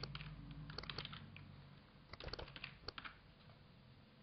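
Faint computer keyboard typing: keystrokes in quick little runs, near the start, about a second in and again after two seconds, as a word is typed out.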